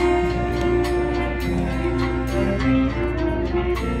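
Community youth wind band of clarinets, saxophones, trumpets and trombones playing a bolero medley: sustained melody and harmony over a light, regular percussion beat.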